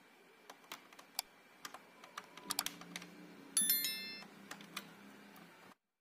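Subscribe-button reminder sound effect: a run of sharp clicks, then a short bright bell ding about three and a half seconds in, over a faint low hum. The sound cuts off abruptly near the end.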